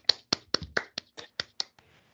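Brief hand clapping in welcome, about eight sharp claps at four to five a second, fading toward the end.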